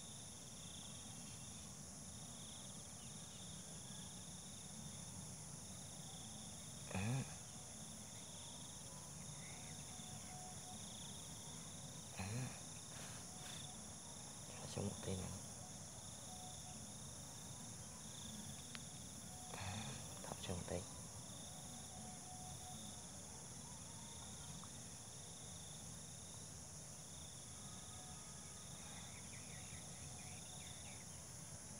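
Steady chorus of insects, crickets, in several high continuous bands. A few brief low voice sounds come and go about 7, 12, 15 and 20 seconds in.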